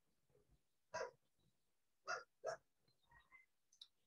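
Near silence on a video call, broken by three short, faint sounds about one, two and two and a half seconds in.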